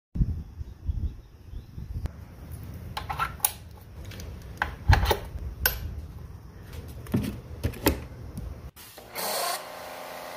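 Hands handling an AR Blue Clean 675 pressure washer and screwing a hose coupling onto its brass pump inlet: scattered clicks, knocks and rubbing of plastic and brass fittings, over a low handling rumble. Near the end the handling stops and a steady hum takes over.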